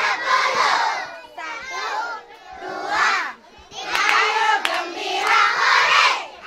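A large group of young children shouting and chanting together in loud bursts, with a short lull about halfway through.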